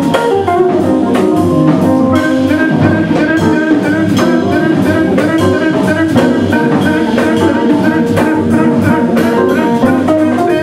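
Live jazz band playing with a steady drum-kit beat under electric guitar and keyboard.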